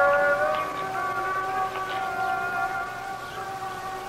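Several steady high tones sounding together as one held chord, unchanging, with a slight swell at the start.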